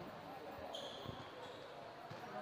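A basketball bouncing on a court floor, two low thumps about half a second apart, under a faint murmur of voices. A brief high squeak comes in the middle.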